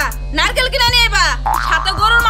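Dialogue over background music with a steady low bass.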